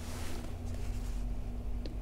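Handling noise from a hand on a phone in its holder: a brief rustle at the start and a small click near the end, over a steady low hum.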